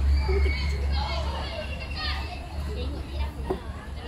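Young female players' voices calling and shouting across a field hockey pitch, over a steady low rumble, with one short sharp knock about three and a half seconds in.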